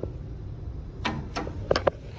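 An elevator hall call button clicks as it is pressed, then a few short sharp clicks and taps follow about a second in. The loudest three come close together near the end, over a low steady rumble.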